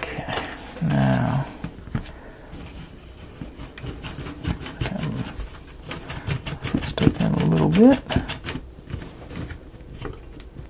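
Small wooden clicks and taps from a laser-cut wooden model being handled and turned over, in a quick run through the middle. A man makes two brief wordless vocal sounds, about a second in and again near the end.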